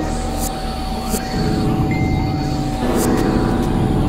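Experimental synthesizer drone music: a steady held tone over dense low rumbling layers, with short high hissy swells, more pitched layers joining about halfway, and a brief high tone about two seconds in.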